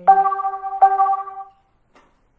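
A bright chime sounds twice: two identical ringing tones about three-quarters of a second apart, fading out by about a second and a half in, much louder than the voice around it.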